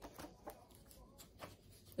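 Near silence with a few faint, soft ticks and rubbing of cards being handled over a tabletop.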